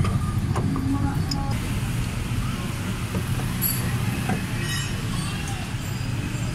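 Steady low rumble of background vehicle traffic, with a few faint short clicks about the middle.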